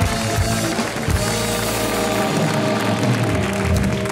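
Television show segment jingle: loud band music with a drum beat that cuts off at the end, as studio audience applause carries on.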